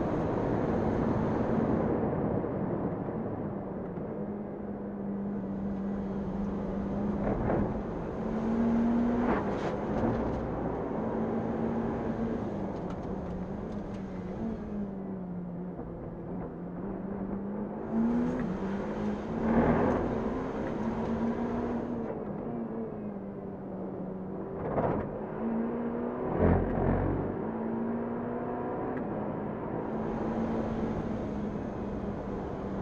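Ferrari Challenge Evo race car's twin-turbo V8 at full throttle, heard from inside the cockpit, its revs rising and falling through the gears on a hot lap. Sharp cracks and thumps come through several times.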